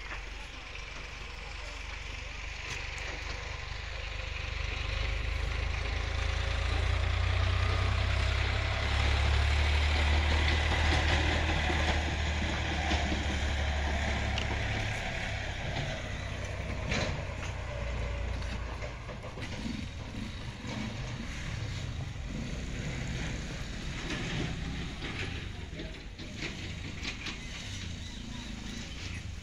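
Low engine rumble that swells over several seconds, is loudest around the middle, then fades away.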